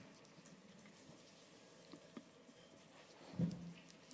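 Quiet room tone in a small room, with a couple of faint clicks about two seconds in and a brief murmur of a voice near the end.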